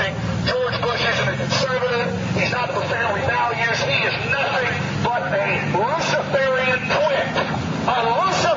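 Continuous indistinct talking over a steady low hum.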